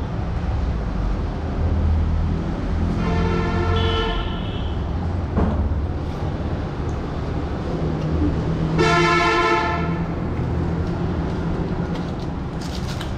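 Two vehicle horn blasts, each a second or more long: one about three seconds in and one about nine seconds in. They sound over a steady low rumble of engines.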